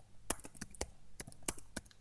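Typing on a computer keyboard: an uneven run of about ten key clicks.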